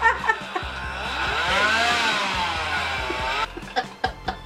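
Motorcycle engine revving sound, the pitch swelling up and falling back in waves, then cutting off suddenly about three and a half seconds in, followed by a few light clicks.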